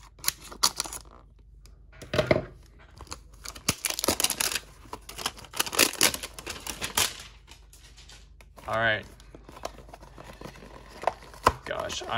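Plastic shrink-wrap being torn and peeled off a cardboard trading-card box, crinkling and crackling in irregular bursts. A short vocal sound comes about two seconds in, and another near the nine-second mark.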